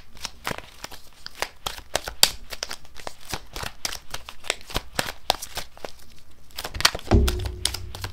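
A deck of tarot cards being shuffled by hand: a rapid run of soft flicks and slaps of card on card. A low hum comes in near the end.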